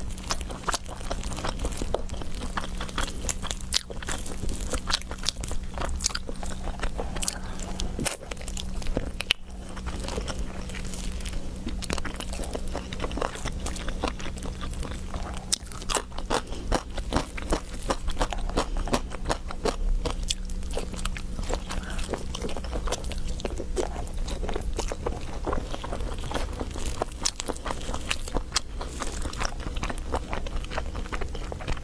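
Close-miked eating of roast chicken: biting into and chewing the meat and skin, with a constant run of small sharp crunching clicks. A steady low hum runs underneath.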